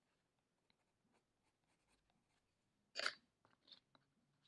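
Mostly near silence, with faint handling noises of colored pencils. One short scratchy rustle comes about three seconds in, followed by two softer ticks.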